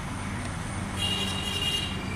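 Outdoor background of steady low road-traffic rumble. About a second in, a high, steady tone lasting under a second sounds over it.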